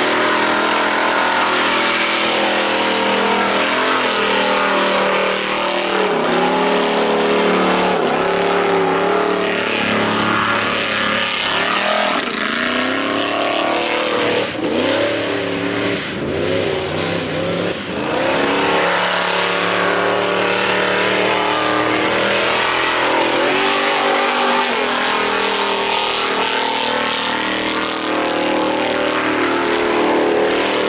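Off-road race buggy's engine running hard through a muddy dirt course, its pitch repeatedly rising and falling as it accelerates and lets off, with a quicker run of dips and climbs in the middle.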